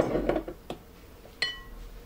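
A clattering knock at the start, then a metal spoon clinks against a glass bowl about one and a half seconds in, ringing briefly.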